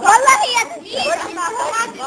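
Several children's voices shouting and chattering excitedly over one another, high-pitched, loudest in the first half-second.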